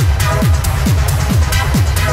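Techno DJ mix: a steady four-on-the-floor kick drum, a little over two beats a second, each kick dropping in pitch, with crisp hi-hat ticks between the kicks.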